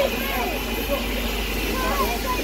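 Indistinct voices over a steady low hiss and rumble from a standing steam locomotive, LNER A4 Pacific 60007 Sir Nigel Gresley, simmering.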